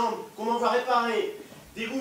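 Speech only: an actor speaking French stage dialogue in a theatre, a man's voice, with short pauses between phrases.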